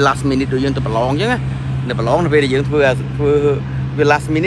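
A man talking in Khmer over a steady low hum.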